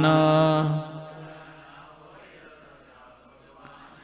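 A man's voice holding one long sung note of a devotional chant, which fades out about a second in; then a quiet pause before the next line.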